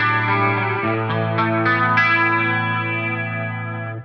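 Electric guitar, an Ernie Ball Music Man Axis, played through a preamp-and-effects pedal rig: sustained chords over a ringing low note, with the notes changing several times. It stops abruptly at the end, leaving a short decay.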